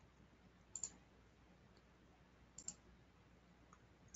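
Near silence broken by faint computer mouse clicks: two quick double clicks about two seconds apart.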